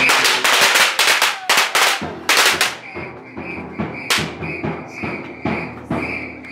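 A string of firecrackers going off in a rapid, irregular run of sharp bangs for about two and a half seconds, then one more loud crack a little after four seconds.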